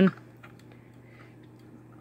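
Quiet room tone with a steady low hum and a few faint light ticks from a 1/24 die-cast model car being turned over in the hands.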